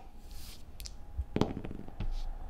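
Six-sided dice rolled onto a cloth gaming mat: a few light separate clacks as they land and knock together, the loudest about one and a half seconds in.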